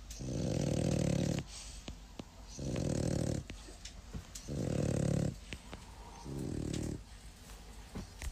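French bulldog snoring in a steady rhythm: four low, rattling snores about every one and a half to two seconds, the first the longest.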